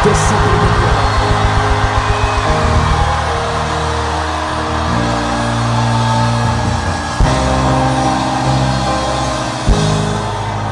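Background keyboard music: sustained chords changing every second or two, under congregation noise from a group shout that dies away over the first few seconds. Two short thumps come near the end.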